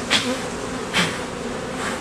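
Honey bees buzzing around an opened beehive, a steady hum, with two brief soft noises about a second apart.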